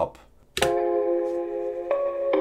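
A melody playing back through Valhalla VintageVerb reverb in its Bright Hall mode. The sustained chords start sharply about half a second in, and another note enters near the end. The reverb makes the melody sound more ambient and spacey.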